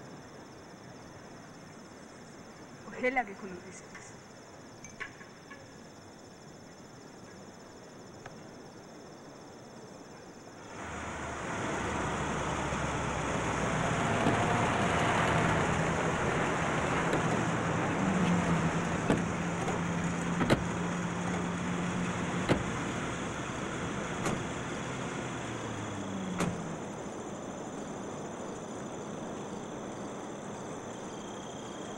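Motor vehicles, a lorry and cars, running with engines going, coming in abruptly about a third of the way in after a quiet stretch. A steady engine drone holds for several seconds with a few sharp knocks over it, and the engine note drops away near the end.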